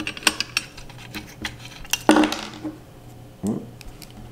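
Small metal carburetor parts clicking and clinking against the carburetor body as the float assembly is fitted back in by hand: a run of light taps, with a louder knock about two seconds in.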